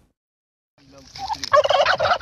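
A flock of Kandıra turkeys gobbling: after a short silence the gobbling fades in about a second in and is loud and rapidly rattling in the second half.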